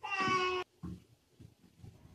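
A short pitched animal cry lasting about half a second at the start, followed by a brief fainter sound just before one second in.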